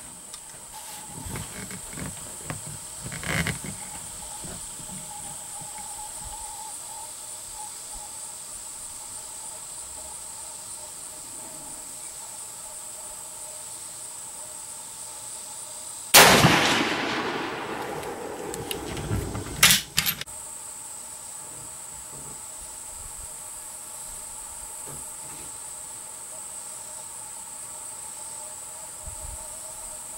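A single shot from a Savage 99 lever-action rifle about 16 seconds in: a sharp report that dies away over about two seconds of echo. About three seconds later come a few quick metallic clacks as the lever is worked. A steady high insect buzz runs underneath.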